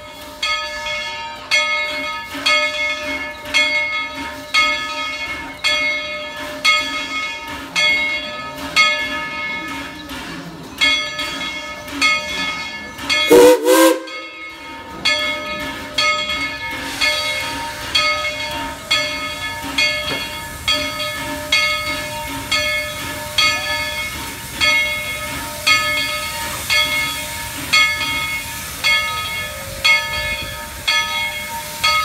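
Steam locomotive's bell ringing steadily, a little more than once a second. A single short steam whistle blast sounds about halfway through, and from a few seconds later the hiss of venting steam grows under the bell.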